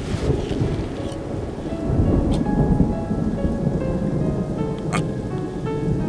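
Rolling thunder with rain, a low rumble that swells in right at the start and keeps on, under music holding long steady notes.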